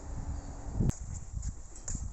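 Footsteps on concrete and handling noise from a carried camera, over a low rumble, with a sharp click about a second in.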